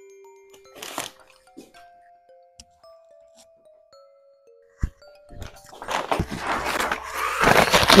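Quiet background music, a slow tune of single notes one after another, for the first five seconds. Then loud rustling and crinkling of a paper fast-food bag and burger wrapper being torn open, growing louder toward the end.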